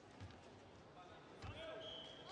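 Quiet, echoing sports-hall ambience with faint, distant voices, broken by two dull low thuds about a quarter second and a second and a half in.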